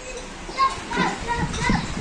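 A small child's voice, with short soft calls and chatter, as he runs about; a low rumble comes in near the end.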